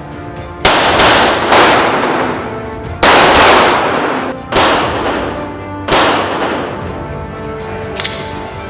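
Five loud pistol shots, spaced irregularly about a second or more apart, each ringing out with a long echoing tail, over background music.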